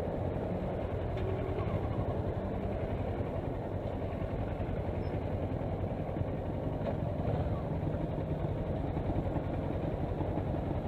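Kawasaki Versys motorcycle engine running steadily at low revs and idle while crawling through slow traffic, with the rumble of surrounding cars and motorcycles.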